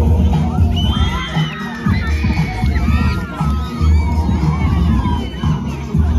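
A group of young children cheering and shouting excitedly, starting about a second in, over music with a heavy bass beat.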